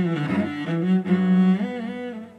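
Solo cello played with the bow: a melodic line of held notes that move from pitch to pitch.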